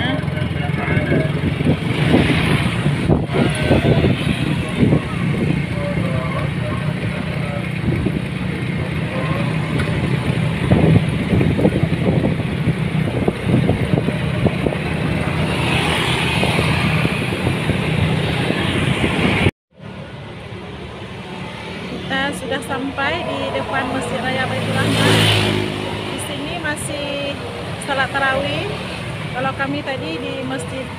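Road traffic and engine noise with wind buffeting the microphone, heard from a vehicle moving along a city street at night. About two-thirds of the way through it cuts suddenly to a quieter street scene with voices and passing traffic, and one vehicle swells louder near the end.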